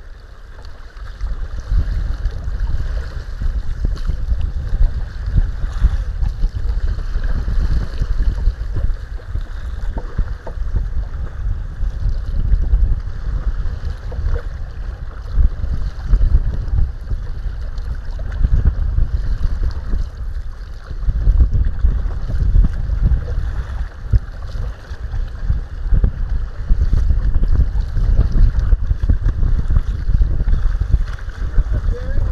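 Wind buffeting the microphone as a loud rumble that rises and falls in gusts, over choppy water sloshing against a kayak's hull.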